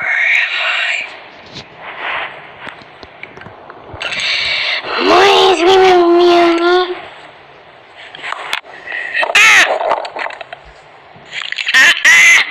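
A person's voice making wordless vocal sounds, with a drawn-out yell of about two seconds in the middle.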